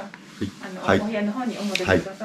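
Men's voices talking indistinctly across a table in a small room, in short broken bits rather than clear words.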